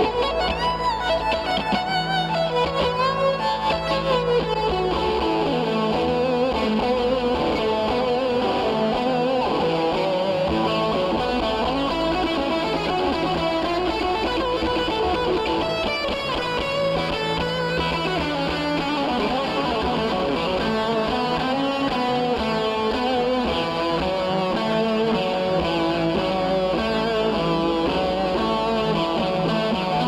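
Instrumental music from a red semi-hollow-body electric guitar playing a melodic lead with sliding notes, over an upright bass played with a bow that holds long low notes.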